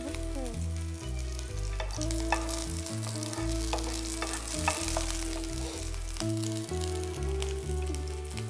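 Chopped green chillies sizzling as they fry in hot oil in a non-stick frying pan, stirred with a wooden spatula that gives a few light clicks against the pan. Soft background music with sustained low notes plays underneath.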